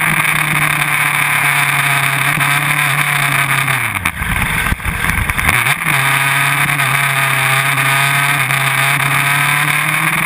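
Onboard sound of a Yamaha R1's inline-four engine at racing speed, with wind rushing over the microphone. About four seconds in, the engine note falls away into a low rumble for a second or two, then comes back and rises slowly.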